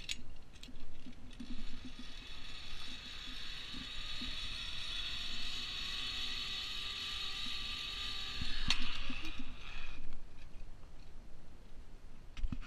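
Zipline trolley pulleys whirring along the steel cable: a steady high whir sets in about a second in, grows louder and rougher near the end with one sharp click, and stops as the rider reaches the landing platform.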